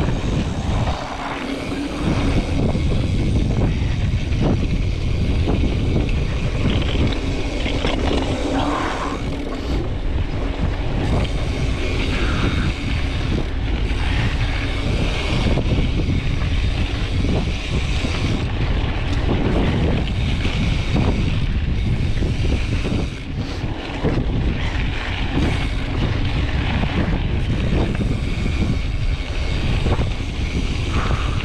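Wind buffeting the microphone of a camera on a fast-moving mountain bike, over the steady noise of its tyres rolling on a dirt trail. The rush is heavy and constant, dipping briefly about a second in and again near the end.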